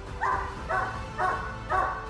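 A dog barking in short, evenly spaced barks, about two a second.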